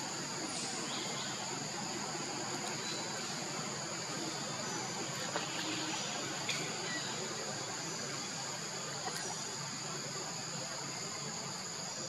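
Steady chorus of insects buzzing at two high pitches without a break, with a few faint short clicks now and then.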